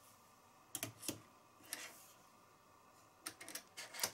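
Faint, scattered light clicks from hands working a knitting machine's metal needle bed: a few spread through the first half and a quick cluster near the end.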